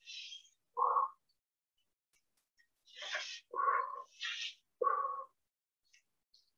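A woman breathing hard under exertion in a plank. There are three pairs of sounds, each a sharp hissing breath followed by a short, grunt-like voiced exhale.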